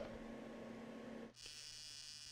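Faint steady hum, then from about a second and a half in the faint, steady buzz of an AC TIG arc on thin 6061 aluminum at low amperage (30 A) from a Lincoln Square Wave TIG 200.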